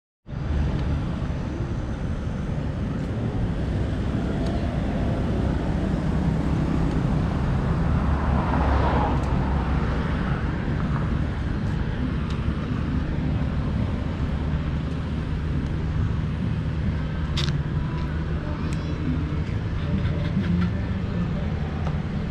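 Steady outdoor background rumble, with a louder swell about eight to ten seconds in and a few sharp clicks near the end.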